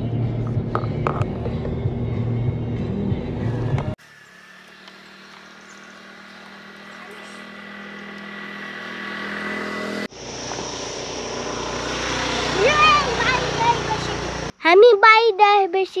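Steady low drone of a car cabin, engine and road noise, for about four seconds, cut off abruptly. A quieter stretch of steady background sound follows and grows louder. Near the end a child is speaking.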